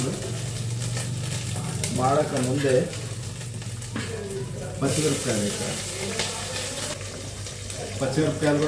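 Food sizzling in a cooking pot on the stove while a spoon stirs it, with a sharp clink about four seconds in. A steady low hum runs underneath.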